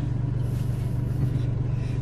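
Steady low drone of a vehicle on the move, its engine and road noise heard from inside the cabin.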